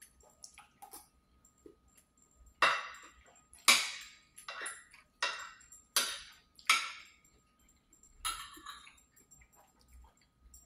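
Eating sounds of a utensil working food on a plate: a run of about seven short scraping strokes, roughly a second apart, each starting sharply and fading quickly, beginning a few seconds in.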